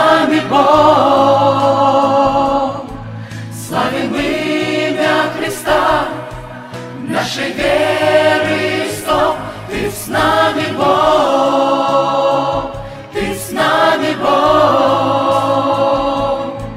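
Mixed choir of men's and women's voices singing a slow Christian hymn in parts, in long held phrases with short breaks between them.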